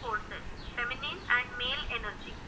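A person speaking over a group video call.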